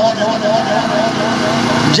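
A man's voice over a microphone and loudspeaker, with a steady hum and background noise underneath.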